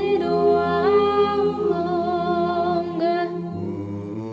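Mixed-voice choir singing a cappella, holding long sustained chords, with the upper voices stepping up in pitch about a second in and a new phrase starting near the end.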